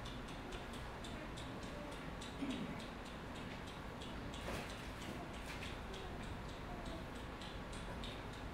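Steady, even ticking, several clicks a second, over a faint room background.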